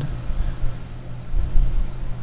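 Room tone in a pause between words: a steady low hum, with a faint, high, broken whine over it.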